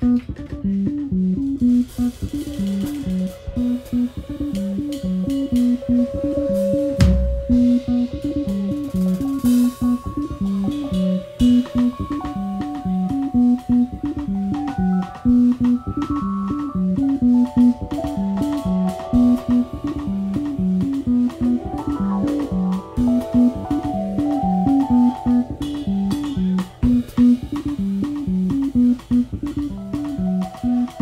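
Live jazz band playing: a repeating bass riff over a drum kit groove with cymbals, and higher held notes coming in about halfway.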